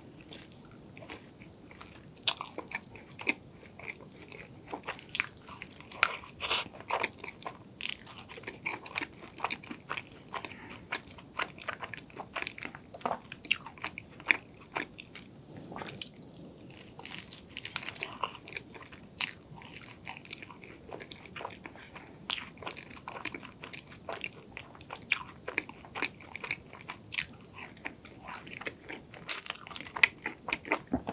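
Biting and chewing a crisp, flaky laminated pastry: irregular sharp crackly crunches, several a second at their busiest, over softer chewing.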